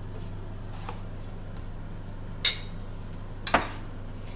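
A metal spoon clinking twice against a stainless steel bowl as spoonfuls of sugar go in. The first clink rings briefly and the second is a duller knock, over a steady low hum.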